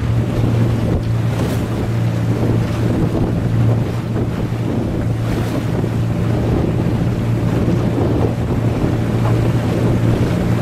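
Small boat's outboard motor running with a steady low hum, while wind buffets the microphone and water rushes past the hull.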